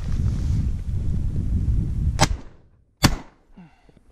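Two 12-gauge shotgun shots about a second apart, a quick double at a pigeon, the second the louder. A low rumbling noise on the camera microphone comes before them.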